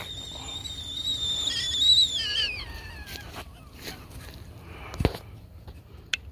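Kettle on a campfire whistling at the boil: one steady high whistle that rises slightly about two seconds in, then falls in pitch and dies away. A few light clicks follow, and a single knock about five seconds in.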